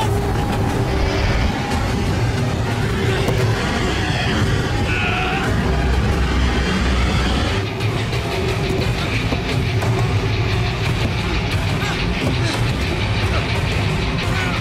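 Action-film soundtrack: tense dramatic music over steady airliner engine and wind noise, without a break.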